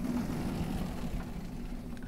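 Vertically sliding chalkboard panels being moved along their tracks, a steady low rumble.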